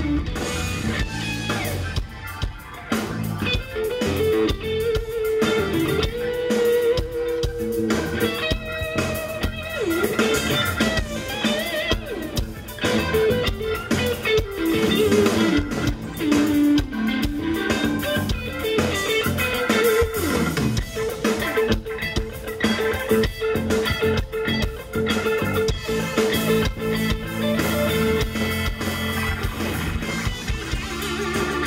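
Live rock band playing an instrumental break: an electric guitar carries a lead melody with bends and slides, over bass guitar and drums.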